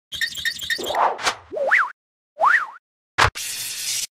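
Animated logo-intro sound effects: a quick run of ticks about four a second, a short whoosh, two zigzagging cartoon 'boing' pitch glides, then a sharp hit followed by a bright hiss.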